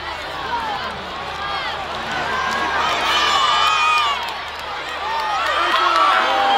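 Rugby stadium crowd shouting and cheering, many voices overlapping close to the microphone. The noise swells about three seconds in and again near the end.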